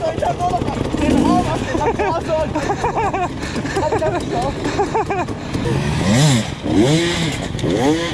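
Enduro motorcycle engines idling, with the revs rising and falling in short blips, most clearly about six to eight seconds in.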